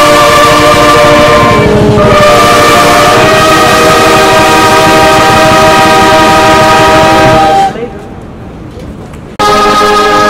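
Brass band of cornets, euphoniums and tubas playing long held chords. There is a brief break about two seconds in, then a long sustained chord that drops away near eight seconds. After a quieter gap of about a second and a half, the band comes back in at full volume.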